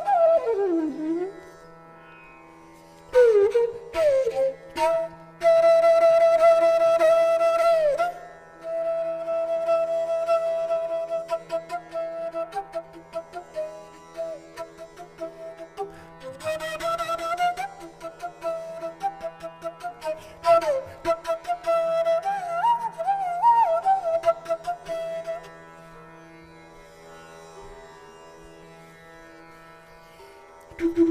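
Indian classical bansuri (bamboo flute) music: the flute sweeps down a falling glide, holds long notes and bends between them in ornamented phrases, over a steady drone. A plucked string instrument strikes in at a few points. Near the end the melody stops and only the soft drone is left.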